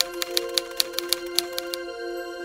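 A quick, irregular run of typewriter-style key clicks, about seven a second, used as a typing sound effect; it stops just before the end. Soft, sustained background music plays under it.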